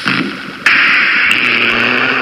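Electronic synth music from an iPad synthesizer: a loud band of hissy, engine-like synthesized noise cuts in suddenly about two-thirds of a second in and holds steady over a low sustained synth tone.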